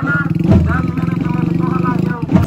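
A motor vehicle's engine running steadily, with people's voices over it.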